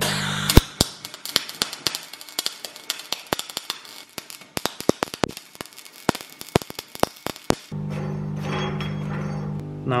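Welding arc crackling and spitting in irregular sharp pops while a steel plate is welded onto a threaded rod. The arc stops about three-quarters of the way through, leaving a steady low hum.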